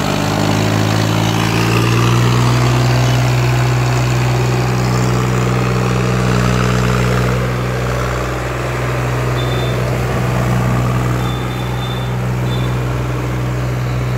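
ACE DI 6565 tractor's diesel engine running steadily under load as it hauls a heavily loaded sugarcane trailer past, its pitch rising slightly in the first two seconds and then holding even.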